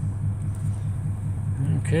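A 1952 Mercury's flathead V8 running steadily, a low, even rumble heard from inside the cabin. A man starts speaking near the end.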